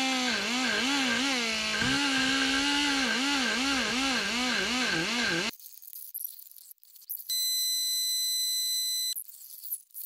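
Electric die grinder with a carbide burr cutting into an aluminium cylinder head's combustion chamber. The motor's whine wavers up and down in pitch as the burr is pressed and eased against the metal. It stops abruptly about halfway through, and near the end a steady high whine sounds for about two seconds.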